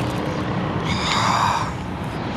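Wind buffeting the microphone as a steady low rumble and rush. About a second in, a short high-pitched tone lasts about half a second.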